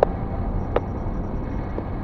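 Steady road and engine rumble inside a moving car, heard through a dashboard camera, with two short sharp clicks, one at the start and one about three quarters of a second in.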